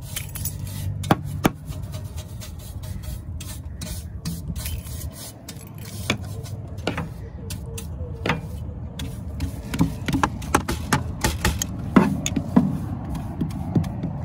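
Stiff-bristled horse brush scrubbing sand and dirt off a ribbed RV entry step, in repeated rubbing strokes with frequent sharp knocks, more of them in the later seconds.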